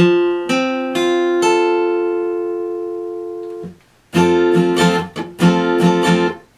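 Epiphone Masterbilt steel-string acoustic guitar in drop D tuning playing an F major barre chord at the 8th fret (8-10-10-10). The chord is strummed and re-struck a few times in the first second and a half, rings and fades, and is cut short by a mute. After a brief gap comes a run of quick strums, each damped right after it is hit.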